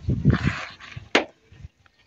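Goat crying out in distress as it is held down and its throat cut, followed just over a second in by one sharp knock, then quiet.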